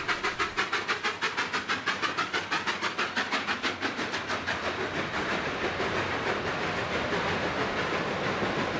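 Coal-fired narrow-gauge steam locomotive, D&SNG No. 486 (a K-36 2-8-2), passing close while working. Its exhaust chuffs come fast and even, about seven or eight a second. After about five seconds the chuffs give way to the steadier rolling of the passenger cars going by.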